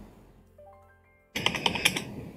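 Rapid clicking of computer keyboard typing, starting about a second and a half in after a near-silent pause with faint background music.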